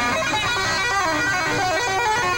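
Electric guitar playing a fast run of single notes, the pitch stepping quickly up and down.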